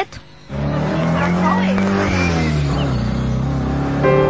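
Car engine sound effect starting about half a second in and running steadily, its pitch dipping slightly midway, with a few short high squeaks.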